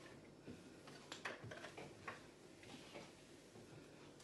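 Faint rubbing of a cloth on the plastic inner walls of a fridge, with a few light scattered clicks and knocks.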